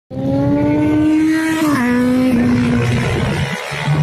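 Racing motorcycle engine at high revs on a circuit. The note climbs slowly, drops sharply about halfway through, then steps down once more, as when the rider comes off the throttle and changes down.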